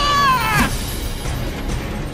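A short, high-pitched cry whose pitch falls over about half a second at the start, over background music.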